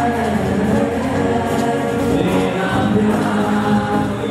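Live music: an acoustic guitar with many voices singing together, a crowd singing along with the band.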